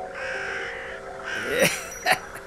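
A harsh, rasping call like a caw or gruff cartoon vocal, heard twice: a longer one at the start and a shorter one that rises and falls in pitch about one and a half seconds in.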